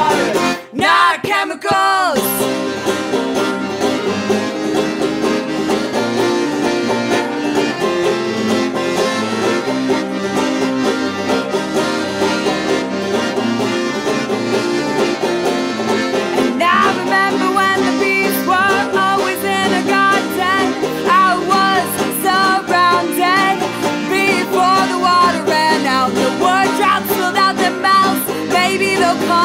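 Banjo and piano accordion playing an instrumental passage of a live song. A sung note trails off in the first couple of seconds, and a busier melody line comes in about halfway through.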